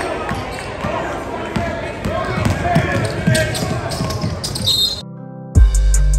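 A basketball dribbled on a hardwood gym floor, the bounces irregular, with indistinct voices in a large hall. About five seconds in, the game sound cuts off and music with a heavy bass drum beat begins.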